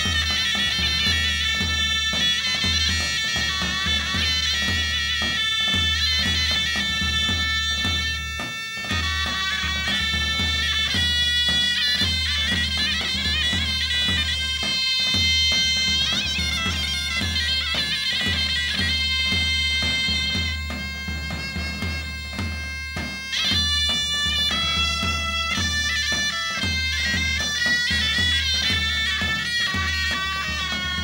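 Traditional Thracian folk dance music: a loud reed pipe, bagpipe-like, plays a continuous ornamented melody over a steady bass-drum beat.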